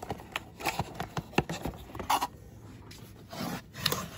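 Cardboard box scraping and rubbing as a three-section serving dish is pulled out of it, with a scatter of small clicks and knocks.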